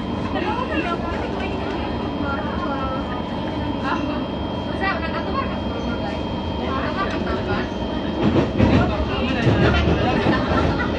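A Singapore MRT train heard from inside the carriage while running along the track: a steady rumble of wheels on rail with a faint high steady whine. The rumble grows louder and heavier, with a few knocks, in the last two seconds.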